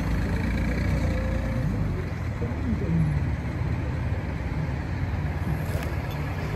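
Steady low outdoor rumble, such as a phone microphone picks up beside a road, with a faint voice about two and a half seconds in.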